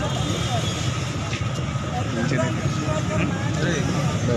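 Street noise: a steady low rumble of road traffic with the voices of a crowd murmuring in the background.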